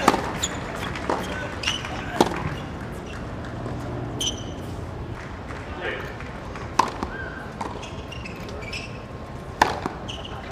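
Tennis racket strings striking a tennis ball in practice rallies: a handful of sharp pops at uneven intervals, with short high squeaks in between and background voices.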